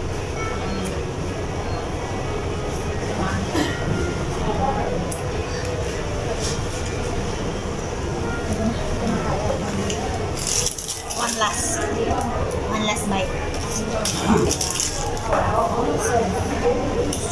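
Fast-food restaurant dining-room ambience: a steady low hum with background voices and scattered small clicks and clinks. About ten seconds in there is a brief high-pitched rustle.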